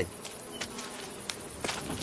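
Steady high-pitched buzzing of insects, with a few faint ticks in between.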